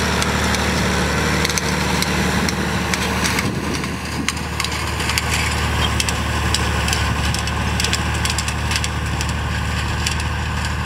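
John Deere 3040 tractor's diesel engine running at a steady hum while it pulls a PZ Haybob hay turner. The turner's spinning tines rattle and crackle through the dry hay as they toss it, with more of that crackle from a few seconds in.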